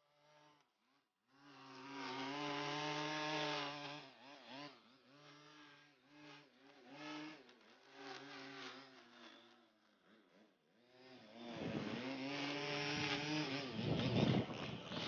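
Gas string trimmer engine revving up and down in pitch. It is faint at first, picks up about a second and a half in, and runs louder and steadier from about eleven seconds on.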